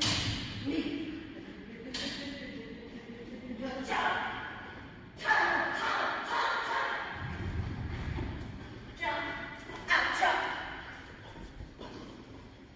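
Indistinct voices echoing in a large hall, in several short bursts, with a few thuds.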